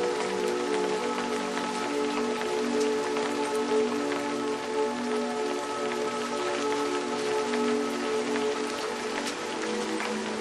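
Steady rain falling, with scattered individual drops ticking through the hiss, mixed with ambient music of long held notes that change slowly.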